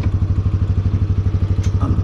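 2002 Kawasaki Prairie 300 ATV's single-cylinder four-stroke engine idling steadily, a low, even pulsing of about a dozen beats a second.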